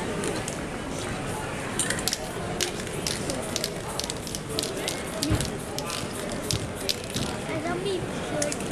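Aerosol spray-paint can let off in many short hisses, several a second, starting about two seconds in.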